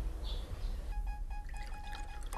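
Coffee being poured from a pot into a cup, a trickling, splashing pour that begins about halfway through, over a soft held music tone.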